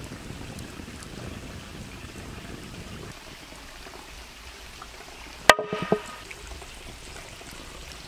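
Steady running-water noise, its low rumble dropping away about three seconds in. At about five and a half seconds comes a sharp click with a brief ringing tone and a few softer clicks after it.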